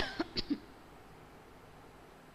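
A woman coughing: one loud cough followed by three quicker, softer coughs within about half a second, then quiet room tone.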